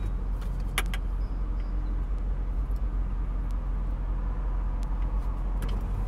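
Car engine idling, heard from inside the cabin as a steady low hum, with a few light clicks and taps; the sharpest comes about a second in.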